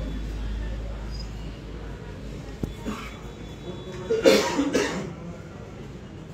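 A person coughing: a loud double burst about four seconds in, over faint room murmur.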